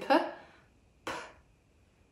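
A woman's voice ends a phrase on a 'p', then makes an isolated /p/ speech sound about a second in: a short, breathy puff of air with no voice behind it.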